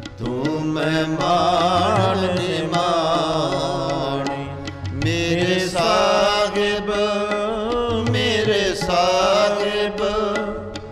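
Sikh shabad kirtan: a voice singing long, wavering, ornamented melodic phrases over harmonium and tabla accompaniment. The singing breaks briefly near the middle and then resumes with a new phrase.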